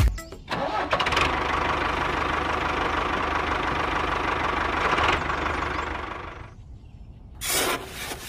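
A small engine or motor starts up about half a second in and runs steadily with a low hum, then fades out at about six seconds. A brief rush of noise follows near the end.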